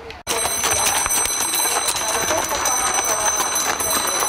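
Horse-drawn carriage under way, with its wheels and the horse's hooves clattering on a gravel track and people's voices, over a steady high-pitched whine. It begins abruptly just after the start.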